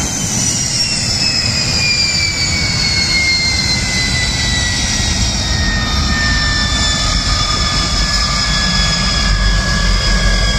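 Aircraft turbine whine, several high tones sliding slowly down in pitch over a steady low rumble.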